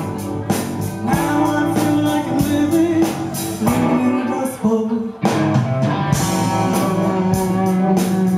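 Live rock band playing: electric guitars over a drum kit, with a short break in the music about five seconds in.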